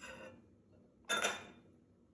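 A ribbed glass diffuser enclosure is set down onto its ceramic base, giving one short, sharp knock about a second in, with a fainter handling sound at the start.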